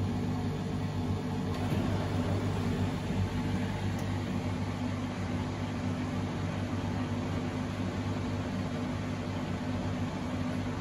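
Bosch WFO2467GB front-loading washing machine running its anti-crease phase at the end of the cycle: the motor turns the drum to tumble the spun laundry without water, with a steady hum.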